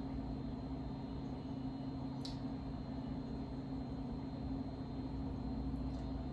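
A steady low hum of room tone, with one faint click about two seconds in.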